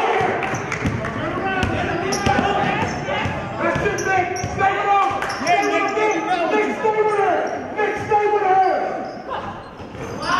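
Basketball dribbled on a gym floor, its bounces echoing in a large hall, with players and spectators calling out over it. The voices drop away about nine seconds in.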